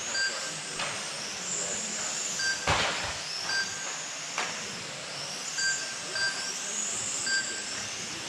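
Electric motors of 1/12-scale radio-controlled race cars whining, rising and falling in pitch as the cars accelerate and brake around the track. Short electronic beeps repeat throughout, and there is a sharp knock about three seconds in.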